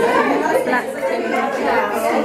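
People talking: speech and the chatter of voices in a room, with no other sound standing out.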